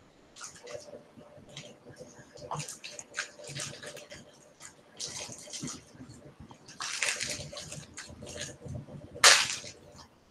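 Irregular rustling and hissing noises from a participant's open microphone on a video call, the loudest burst coming near the end.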